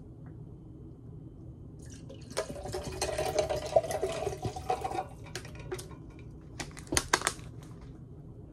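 Bottled water pouring from a small plastic water bottle into a Stanley tumbler, a splashing pour with a ringing note that lasts about three seconds. A few sharp clicks follow near the end.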